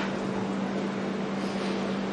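Room tone: a steady low hum over an even hiss, unchanging throughout.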